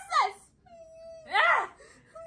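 Young women laughing in short bursts, with a long, high held vocal note between the laughs.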